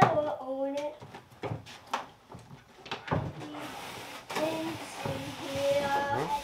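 A child's voice singing and vocalizing without clear words, with a few sharp knocks and about a second of rustling as a flat-screen TV is handled on its stand.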